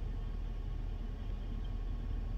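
Steady low hum inside a car's cabin, with no other events.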